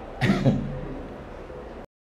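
A man clears his throat once into a handheld microphone, about a quarter second in, over a steady microphone hiss. The hiss cuts off abruptly near the end.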